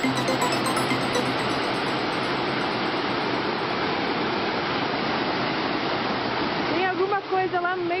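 A waterfall rushing over a broad rock cascade in a steady, even rush of water. A person's voice comes in near the end.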